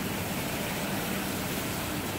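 Steady, even background hiss and low hum of a large indoor hall, with no distinct events.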